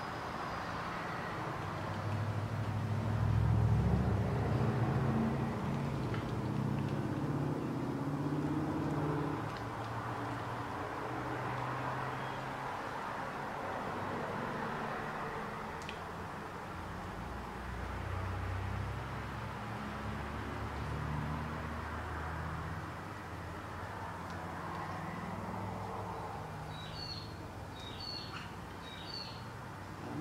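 Background noise with a low, wavering motor-like drone, loudest about four seconds in, over a steady hiss; a few short high chirps near the end.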